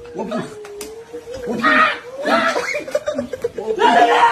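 Men's voices laughing and crying out during a playful tussle. A single held, slightly wavering tone runs through the first second or so, then louder bursts of voice follow.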